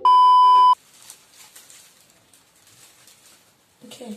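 A TV test-tone beep sound effect with a colour-bars glitch transition: one loud, steady, single-pitched tone lasting under a second, which cuts off suddenly. After it there is only faint background noise.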